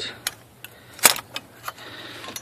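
Metal V-band exhaust clamp clinking as it is handled and pulled into place: a few sharp clicks, the loudest about a second in.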